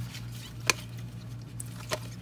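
Stiff trading cards being handled and flipped through by hand: two sharp light clicks about a second apart and a few fainter ticks, over a steady low hum.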